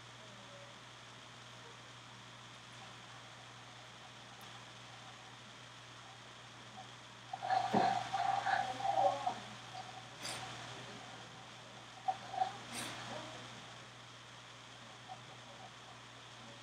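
Quiet room tone. About halfway through comes a brief non-speech vocal sound from a man, a pitched throat sound lasting a second or two, followed by a couple of faint short clicks.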